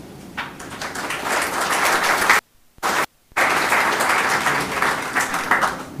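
Audience applauding, building up in the first second and dying away near the end. The sound cuts out completely twice, briefly, around the middle.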